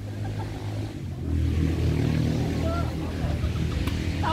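A motor engine running with a low, steady hum that grows louder about a second in and holds. Faint voices sound over it.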